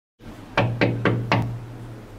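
Four knocks on a door in quick succession, over a steady low hum.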